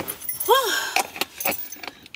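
A bunch of car keys jangling in a hand, with a few light metallic clinks spread through the moment. There is a brief rising-and-falling tone about half a second in.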